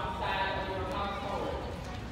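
Speech: a spoken announcement over a public-address loudspeaker, with no other sound standing out.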